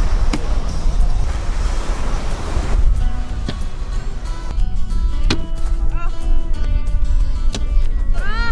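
Wind buffeting the microphone with a constant low rumble and a hiss of surf; from about three seconds in, background music with held notes comes in over it, and a few sharp knocks sound at intervals.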